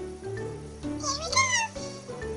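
Background music with steady bass notes; about a second in, a short high call with a rising-and-falling pitch, like a meow, sounds over it for under a second.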